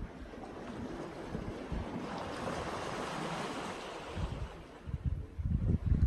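Small sea waves washing in, with a broad swell of surf hiss about two seconds in. Wind gusts rumble on the phone's microphone near the end.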